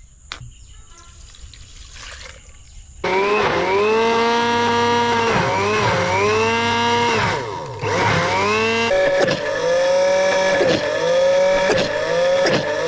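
Electric blender switching on about three seconds in and running loud, churning thick wood apple pulp with sugar; its motor whine sags in pitch and recovers again and again as the thick mix loads the blades.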